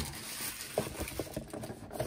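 Faint handling noise of a cardboard trading-card box being picked up and moved, with soft rustling and a few light taps about a second in.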